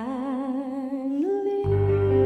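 Female vocalist singing a long held note with vibrato that steps up in pitch about a second in. Pop-ballad backing supports the voice, and a low bass comes in about one and a half seconds in.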